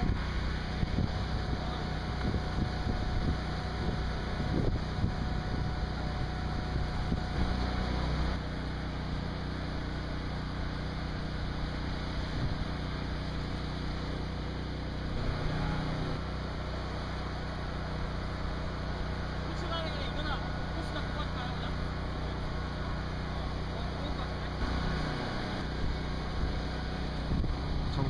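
Tracked underwater cleaning robot's motors running with a steady low hum as it crawls out of the shallows onto the sand, the hum shifting slightly a couple of times and briefly dipping near the end.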